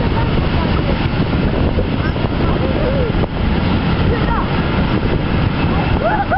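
Freight train of Fccpps hopper wagons rolling past close by: a steady heavy rumble of wheels on rail, with the red diesel locomotive drawing level near the end. Wind buffets the microphone, and a few short high chirps sound over the rumble.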